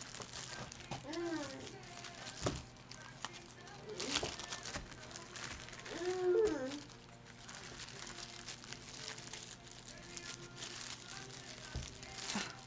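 Cards being worked out of a tight-fitting box: rustling and a few sharp knocks of handling, with a few short murmured sounds from a woman's voice.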